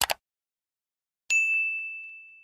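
Subscribe-button animation sound effect: a quick double mouse click, then a little over a second later a single bright notification-bell ding that rings on a clear high tone and slowly fades.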